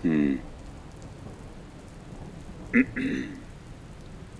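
Steady hiss of rain on a car, heard from inside the cabin. A brief voice sound comes about three seconds in.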